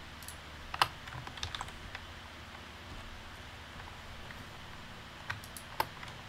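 A handful of sharp computer keyboard and mouse clicks, the loudest about a second in and a couple more near the end, over a faint steady hum.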